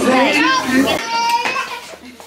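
Voices of several people talking at once, children among them, loudest in the first second and dying down near the end.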